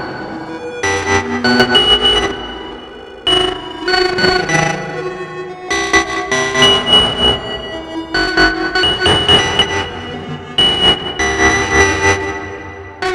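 Eurorack modular synthesizer playing a sequenced, pitched pattern of several voices, with ringing high tones over a low pulse. The phrases start again about every two and a half seconds.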